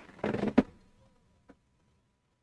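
A brief half-second murmur of a man's voice without clear words, then one faint click and near silence.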